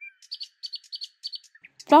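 Bird chirping in a quick run of short, high chirps for about a second, then a pause before a voice begins near the end.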